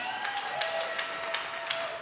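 Scattered hand claps from a concert audience, a string of separate sharp claps. Under them a single held tone dips slightly in pitch and then holds steady.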